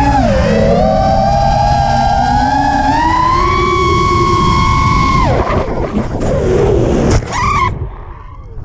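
FPV quadcopter's brushless motors and propellers whining with throttle. The pitch dips, climbs and holds, then drops away about five seconds in, followed by two short throttle blips near the end.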